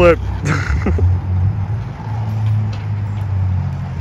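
Magneto Hana Twin longboard's 78A wheels rolling on an asphalt path, a steady low rumble. Short bits of voice come in the first second.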